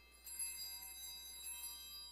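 Altar bells rung at the elevation of the consecrated host: a bright shake of small bells about a quarter-second in and again just past the middle, each left ringing and fading.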